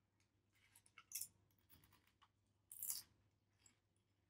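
Near silence: faint room tone broken by a few short, faint crackles, the loudest just after one second and near three seconds in.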